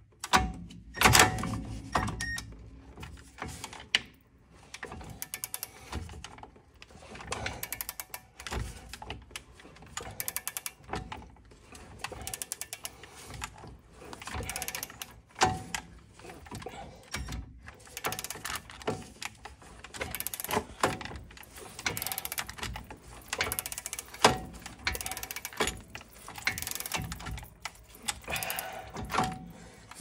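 Ratchet working a stubborn bolt loose on a car's front brake caliper: bursts of rapid clicking, metal-on-metal knocks, with a loud clank about a second in.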